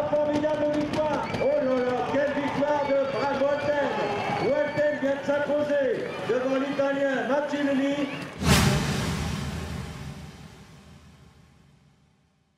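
A man's voice, a finish-line announcer over loudspeakers, shouting excitedly in long, drawn-out calls. About eight seconds in, a sudden loud crash rings out and fades away.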